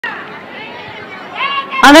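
Only speech: low background chatter, then a woman starts speaking loudly into a microphone near the end.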